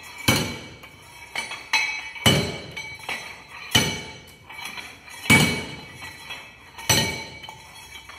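Long metal pestle pounding hard, oven-dried clay in a metal mortar. The strikes come about every second and a half, each with a metallic ring, and there are lighter knocks in between.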